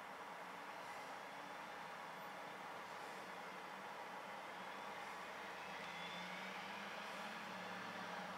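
Steady background hiss of city traffic, with a low vehicle engine hum that swells over the second half and fades soon after.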